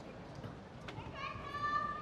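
Murmur of a crowd in a sports hall, with a couple of sharp knocks. About a second in, one high voice calls out in a long held cry that is the loudest sound.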